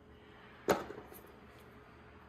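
A plastic cord organizer handled against a blender's plastic body: one sharp click about two-thirds of a second in, followed by a few faint ticks.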